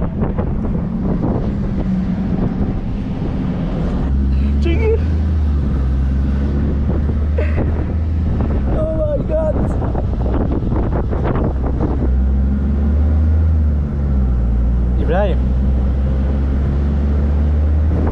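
Wind buffeting the microphone over the low, steady rumble of a moving bus, heard from on its roof; the rumble grows heavier about four seconds in.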